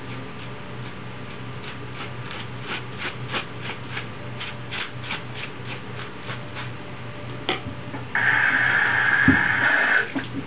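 Tin foil wrapped on the head being handled: a run of small crackles, about three a second, then a few seconds from the end a loud, close rustling that starts suddenly as the foil comes right up to the microphone. A low steady hum lies underneath.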